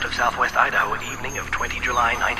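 A processed voice sample in an electronic dance mix: quick, high-pitched syllables that rise and fall, over a steady low drone.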